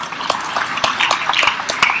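Large audience applauding, a dense patter of hand claps with individual sharp claps standing out, and a brief shout rising over it near the end.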